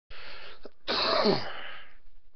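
A man clearing his throat: a short breathy burst, then a longer, louder one whose pitch falls steeply.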